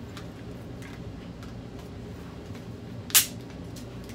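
Handling of a cardboard MacBook Pro box and its wrapping: faint rustles and small clicks, then one sharp snap about three seconds in, over a steady low hum.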